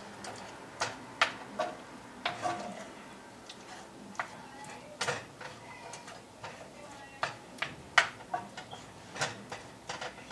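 Wooden spoon stirring chicken pieces in sauce in a skillet, knocking and scraping against the pan in irregular sharp clicks, the loudest about eight seconds in.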